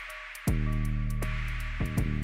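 Background music with a steady beat of quick high ticks and deep bass hits that fall in pitch.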